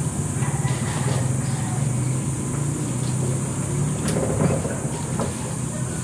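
A steady low engine hum, with a few faint clicks and knocks over it.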